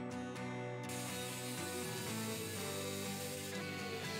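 Angle grinder with a flap disc grinding a bent steel profile tube, a steady hiss that starts about a second in. Guitar background music plays throughout.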